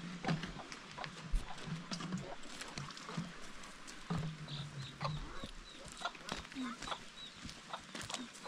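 Outdoor farmyard sounds: chickens chirping, with a run of short high chirps near the middle, over scattered footsteps and scuffs on dry dirt and brief low voice sounds.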